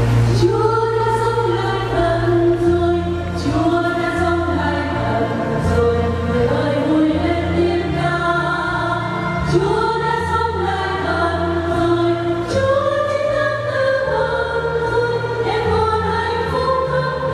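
A church choir singing a Vietnamese Easter hymn over a line of held low accompaniment notes. The choir comes in just after the start.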